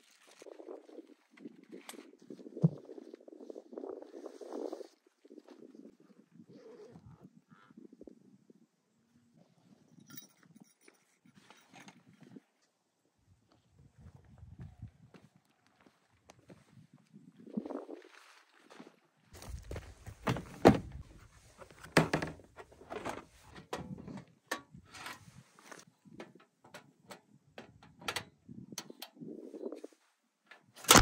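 Footsteps crunching on gravelly ground and camping gear being handled. In the last ten seconds there is a dense run of knocks and clatters from gear being set down and moved.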